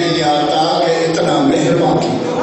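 A man's voice chanting in long, drawn-out melodic notes, the sung style of a zakir's majlis recitation, the pitch dipping and rising a little partway through. The held line ends right at the close.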